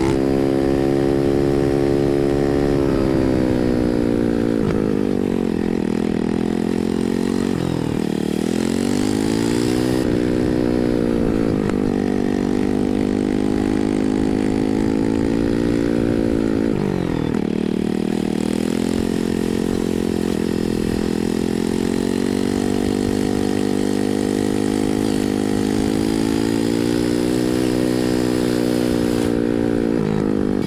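Motorcycle engine running steadily as the bike is ridden, recorded from the rider's seat. Its pitch dips and climbs several times as the throttle is eased off and opened again, with a sharp drop about 17 seconds in.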